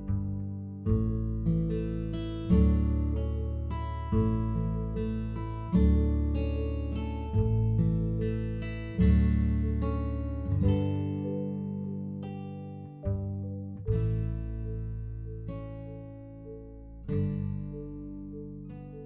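Background music: acoustic guitar chords, each struck and left to ring out.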